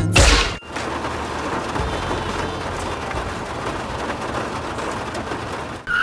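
Cartoon sound effect of a car tyre blowing out: a loud bang at the start, then a steady hissing noise that runs for about five seconds.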